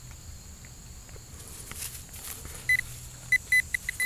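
Garrett Pro-Pointer pinpointer beeping in a dig hole, starting about two and a half seconds in as rapid short beeps at one pitch, about five a second. The beeping signals another metal target in the soil.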